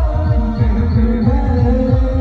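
Instrumental band music through a loudspeaker rig: an electronic keyboard holding steady notes over a fast run of deep, pitch-dropping electronic drum hits from a drum pad.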